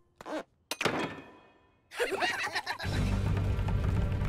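Cartoon sound effects: a short squeak, then a sharp click with a fading rush after it, then a quick burst of squeaky cockroach chatter. Near three seconds a steady, louder rushing sound with a low hum sets in.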